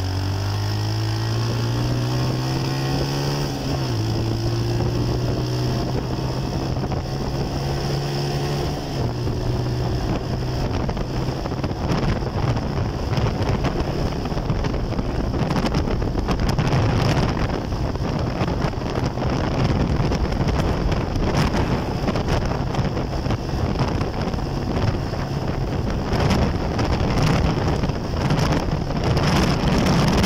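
A road vehicle's engine pulls up through the gears, rising in pitch, dropping at a shift about four seconds in and rising again. After about ten seconds it is buried under steady wind noise on the microphone and road rush at speed.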